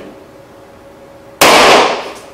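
A latex balloon burst with a needle: one loud pop about one and a half seconds in, with a short trailing echo.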